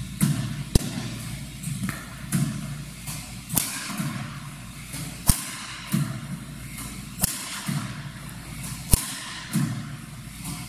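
Badminton smashes with a Yonex Nanoflare 170 Light strung with BG65 at 25 lb: five sharp cracks of the strings striking the shuttlecock, about one every one and a half to two seconds. Each crack has a duller thump a little over a second before it.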